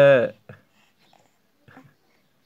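A baby's long vocal squeal that falls in pitch and stops about a third of a second in, followed by a couple of faint short babbling sounds.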